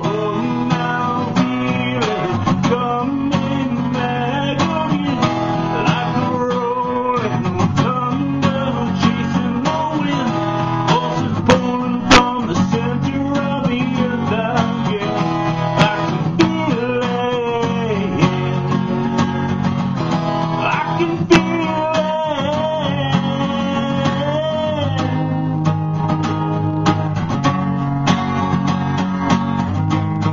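A man singing over a strummed acoustic guitar, the strumming steady throughout.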